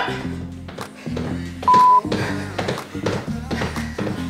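Upbeat workout music with a steady beat, and about two seconds in a single short electronic beep from an interval timer, marking the switch from rest to a 20-second work round.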